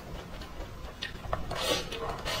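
Close-miked eating sounds: a few light clicks about a second in, then a louder rasping scrape as chopsticks shovel rice from a raised bowl into the mouth.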